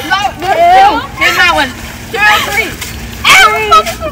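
Several girls' excited, high-pitched squeals and shouts, coming in quick waves and loudest about a second in and again near the end, as they reach into ice-cold water for candy.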